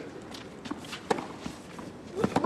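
Tennis rally on a clay court: a few sharp knocks of ball and racket, the strongest about a second in, among players' footsteps on the clay.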